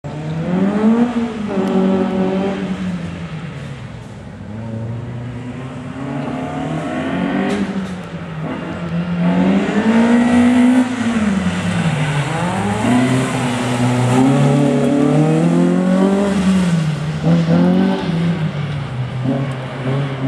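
A Peugeot 106's engine revving up and falling back again and again, every two to three seconds, as the car accelerates and brakes through a tight slalom course.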